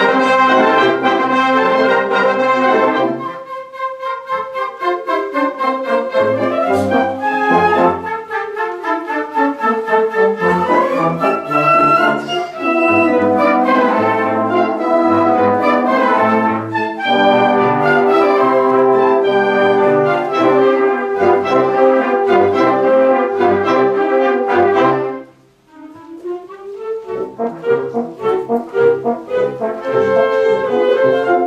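Student wind band playing live, brass to the fore over a low pulse of sustained chords. The music thins briefly about four seconds in, then drops to a momentary near-silent pause about 25 seconds in before the band comes back in.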